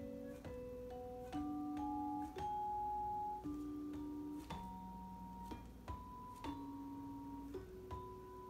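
Vibraphone played with four yarn mallets: a slow melody over two-note chords, a new stroke about once a second, each note ringing on.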